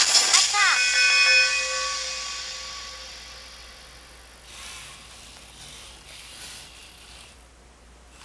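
The RoBoHoN robot's boxercise tune ends on a held electronic chord that fades away over about two seconds. After that comes the robot's faint servo-motor whirring as it raises an arm and lowers it back to standing.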